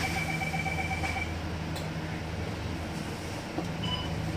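Cabin noise on the upper deck of a double-decker bus in service: a steady low engine and road hum, with a thin high whine that stops about a second in and a light knock near the end.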